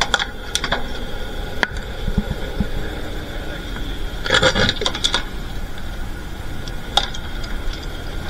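Scattered sharp clicks and clinks over a steady background hum, with a denser run of clinking about four and a half seconds in.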